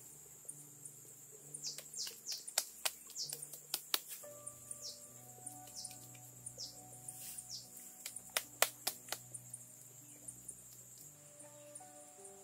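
Soft background music with held notes, over jungle ambience: a steady high insect drone and bursts of quick, falling bird chirps, clustered in the first few seconds and again past the middle.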